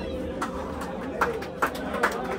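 A pause between songs: a steady amplifier hum under voices in the room, with a few short sharp taps.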